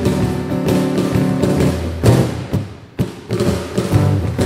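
Acoustic guitar and cajón playing an instrumental passage with steady strummed chords and cajón beats. About two seconds in a loud accented hit rings out and fades into a short break, and the two instruments come back in about a second later.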